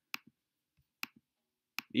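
Faint computer mouse clicks in near silence: two press-and-release pairs about a second apart, as the OK button of a spreadsheet dialog is clicked.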